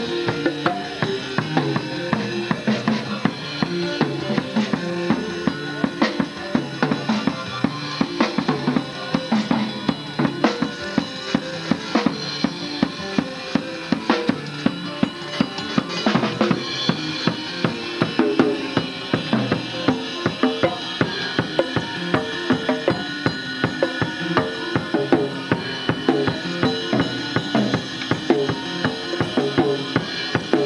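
Live band playing a song: a drum kit keeping a steady beat of bass drum and snare under electronic keyboard chords.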